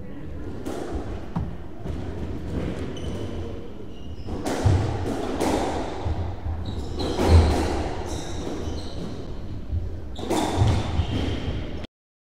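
Squash ball struck by rackets and hitting the court walls during a rally, sharp echoing impacts a second or two apart, with rubber-soled shoes squeaking on the wooden floor between shots. The sound cuts off suddenly just before the end.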